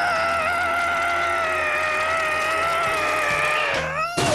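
A long, held, whistle-like tone slowly falling in pitch, a cartoon falling sound effect for a bicycle tumble. Near the end it bends sharply upward, just before a crash.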